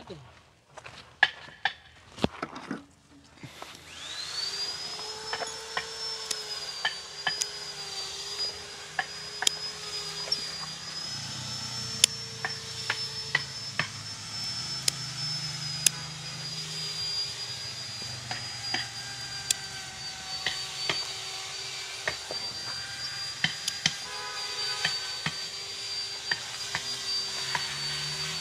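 A handheld electric power tool spins up about four seconds in and runs steadily with a high whine while cutting into bonsai wood, with many scattered sharp clicks. A few sharp clicks come before it starts.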